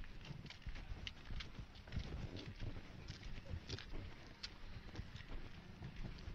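Wind buffeting the microphone in an uneven low rumble, with scattered faint clicks and ticks through it.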